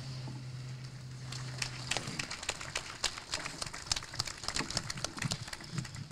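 A lectern microphone picks up a low steady hum that stops about two seconds in. After that come irregular clicks, taps and rustles, the handling noise of a speaker settling at the podium.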